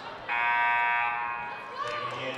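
Basketball gym scoreboard horn sounding once, a steady buzzing tone lasting about a second and a quarter before it fades out.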